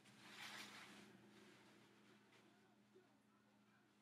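Near silence, with a faint soft rustle of a cloth towel being pulled over wet, soapy hair during the first second or so that fades out.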